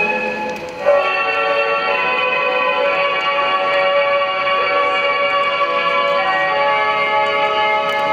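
Men's voices reciting shigin (Japanese chanted poetry) in unison, holding long drawn-out notes. The voices fall away briefly and come back in together just before a second in, then hold a long note.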